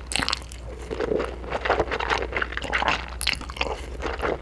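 Close-miked eating of spicy stir-fried instant noodles: chewing and slurping with many irregular, quick wet mouth clicks.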